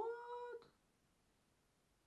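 A woman's short, wordless, high-pitched vocal exclamation like an 'ooh', rising then held steady for about half a second right at the start.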